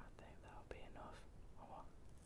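Faint close-up mouth sounds of eating an apple, picked up on an earphone's inline microphone held by the mouth: soft wet chewing and breathy noises with a few sharp clicks.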